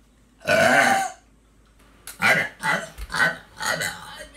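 A person's single loud burp, about half a second long, starting about half a second in. From about two seconds in it is followed by a run of four or five shorter vocal sounds.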